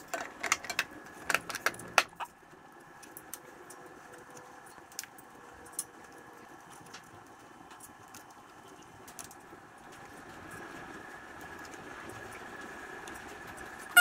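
Plastic engine cover being set in place and a thin wire handled around the spark plug boot: a quick cluster of sharp clicks and rattles in the first two seconds, then occasional faint ticks over a faint steady hum.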